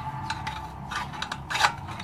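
Metal rod scraping and clicking against the inside of a motorcycle muffler as steel wool is packed in: a run of short scrapes, the loudest about one and a half seconds in.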